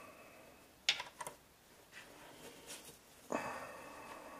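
A few small metallic clicks and knocks from a socket wrench working a 10 mm bolt on an electric drive unit's inverter: a sharp click about a second in, two lighter ones just after, and a louder clink near the end that rings briefly.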